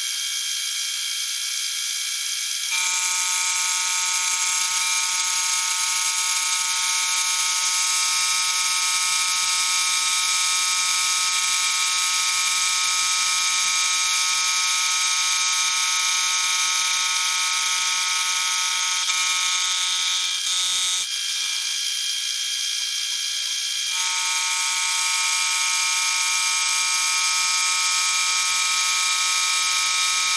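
Benchtop milling machine face-milling a steel bar in a vise: a steady, high-pitched machining whine from the spinning cutter and spindle. It grows fuller about three seconds in, eases briefly just past the two-thirds mark, and fills out again.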